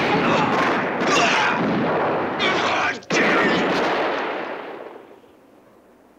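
Rapid, overlapping gunshots from several handguns, loud and nearly continuous. The firing breaks off for an instant about three seconds in, resumes, and dies away by about five seconds.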